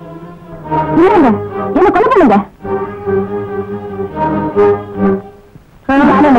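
Film background score: held brass and orchestral notes, with louder swells about one and two seconds in.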